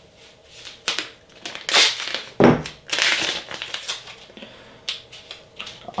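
Blue painter's tape being pulled off the roll in several short ripping pulls, with crackling and rustling as the strip is handled and laid onto a glass build plate.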